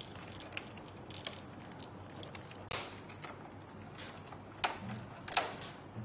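Plastic grill and louver parts of a Samsung mini-split indoor unit clicking and snapping as they are unclipped by hand: scattered sharp clicks, the loudest about five seconds in.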